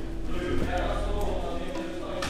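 Soft background music with steady held notes.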